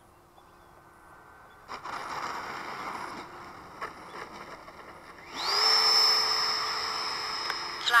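Electric ducted fan of a radio-controlled MiG-17 model jet during a touch-and-go. A rushing fan noise picks up about two seconds in; about five seconds in the fan spools up to full throttle with a rising whine, then holds a steady high whine that slowly fades as the jet climbs away.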